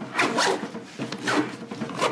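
Zipper on the top compartment of a canvas camera bag being pulled shut in about four short pulls, each a quick rising rasp.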